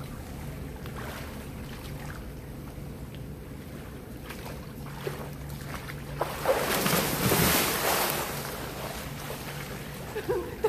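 Water splashing in a swimming pool over a steady low hum, with a big splash starting about six seconds in and washing away over the next two seconds.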